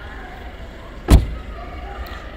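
A car door on a white Mercedes-Benz saloon is slammed shut once, about a second in, with a single solid thump.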